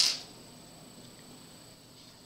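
Quiet room tone with a faint, steady high-pitched tone, after a brief hiss at the very start that fades within a quarter second.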